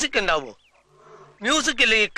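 Speech only: Malayalam film dialogue spoken forcefully, in two phrases about a second apart.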